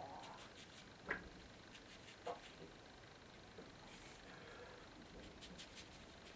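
Near silence with faint strokes of a round sable brush on wet watercolour paper, and two soft clicks about a second and two seconds in.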